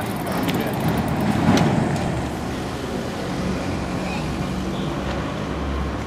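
Street ambience: a motor vehicle running past, louder about a second or two in, with people's voices in the background.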